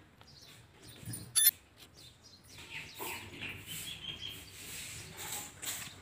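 A small bird chirping: one sharp, short high chirp about a second and a half in, then fainter scattered chirps and rustle through the second half.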